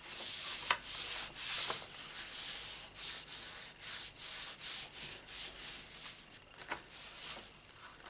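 Hands rubbing back and forth over a sheet of scrap paper to press cardstock onto an inked background stamp. A dry papery swishing comes in strokes about twice a second and eases off in the last couple of seconds.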